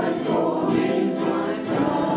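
A group of ukuleles strummed in rhythm while several men and women sing the melody together.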